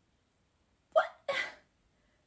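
Two quick, breathy vocal sounds from a young woman about a second in, the first with a short pitched catch in it, the second more of a rush of breath: an exasperated non-word noise in the middle of a rant.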